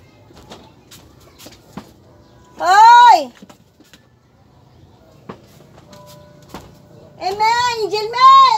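A child's loud, high-pitched wordless call, once about three seconds in and then three times in quick succession near the end, each rising and falling in pitch. Faint clicks and knocks fall between the calls.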